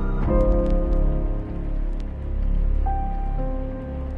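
Lofi hip-hop instrumental in F minor with the drums dropped out: soft sustained keyboard chords over a layer of rain sound, a new chord entering just after the start and another note coming in near the end.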